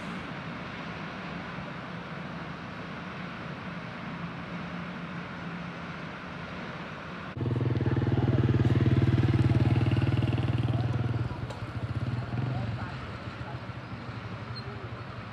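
Outdoor background with a steady low hum. About seven seconds in, a motor vehicle engine comes in loud and close, running steadily for a few seconds, then turns uneven and fades back near the end.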